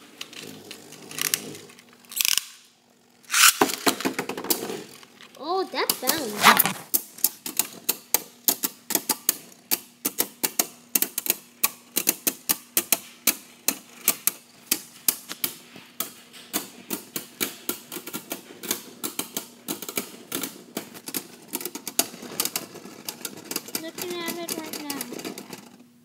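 Two Beyblade Burst spinning tops (Arc Bahamut and Tornado Wyvern) clashing against each other in a plastic stadium. A few louder knocks come first, then a fast, irregular clatter of several hits a second as the two tops stay locked together, still spinning.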